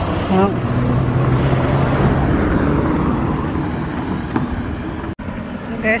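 A motor vehicle passing close by: its engine hum and road noise swell over the first couple of seconds, then fade away.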